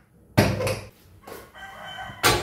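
Aluminium pressure cooker set down on the gas stove's burner grate with a sudden metallic clank about half a second in, fading quickly. Near the end a steady pitched sound with several tones is heard.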